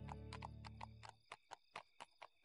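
Horse hooves clip-clopping at a walk, a run of sharp, evenly spaced strikes several times a second. They come in as a held music chord dies away about a second in.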